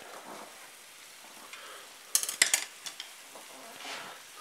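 Potatoes and a minced-meat cutlet frying in a pan with a faint steady sizzle while a metal spoon stirs them, with a quick cluster of spoon clinks against the pan about two seconds in.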